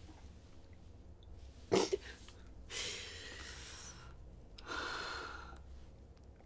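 A woman crying: one sharp sobbing gasp, then two long, shaky breaths out.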